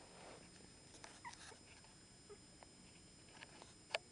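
A few faint, short squeaks from newborn chihuahua puppies crawling on carpet, with light rustling and a single sharp click just before the end.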